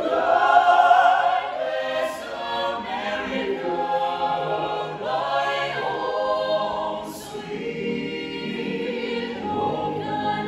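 Mixed a cappella vocal ensemble of men's and women's voices singing in close harmony without instruments, loudest in the first second. The domed rotunda adds reverberation to the voices.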